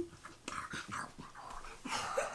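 Small excited puppy making soft, short, scattered noises up close while being played with.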